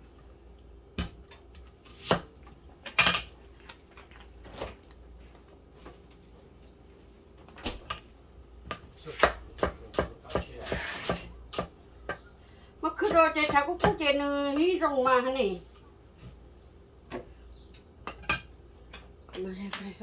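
Irregular knocks and clinks of a kitchen knife on a wooden cutting board and a plate, not a steady chopping rhythm. A voice is heard for about two seconds just past the middle.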